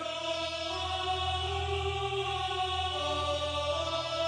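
Choral music intro: sustained wordless voices over a low drone, entering suddenly and moving to a new pitch about three seconds in.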